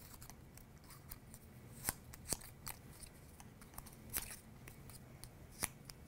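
Green cardstock leaf being folded and curled by hand: faint, scattered crinkles and small clicks of stiff paper.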